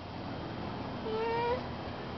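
A single short, faint voice-like call about a second in, lasting about half a second and rising slightly in pitch, over a steady background hiss.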